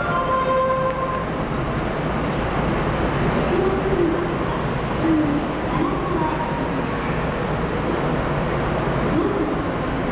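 A JR West 521 series electric train stands at a station platform under a roof. Its steady running-equipment hum mixes with station ambience. A chime melody from before ends about a second in, and faint wavering tones come and go later.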